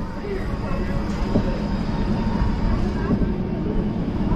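Roller coaster train rolling slowly along the track out of the station, a steady rumble that builds a little, with faint voices of riders and onlookers over it.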